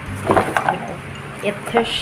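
Cardboard box and its cardboard insert being pulled apart and handled, the cardboard scraping and creaking in short irregular bursts, with a short spoken word about halfway through.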